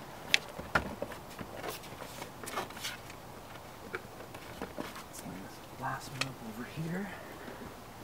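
Replacement plastic windshield cowl being pressed down into its clips along the base of the windshield: a run of sharp plastic clicks, snaps and knocks, loudest in the first second.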